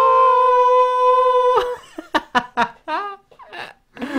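A person sings one long, high, steady note for about a second and a half, showing off their singing voice, then breaks off into a few short vocal sounds with sliding pitch.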